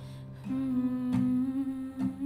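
A voice humming a melody over acoustic guitar, holding one long note from about half a second in, with a guitar strum near the middle.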